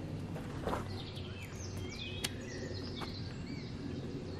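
Wild birds singing: a run of short whistled chirps and sliding notes starting about a second in, over a steady low background hum, with one sharp click a little after two seconds.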